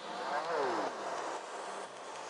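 Dub techno breakdown with the kick and bass dropped out: a quiet synth sound gliding downward in pitch about half a second in, over a soft hiss.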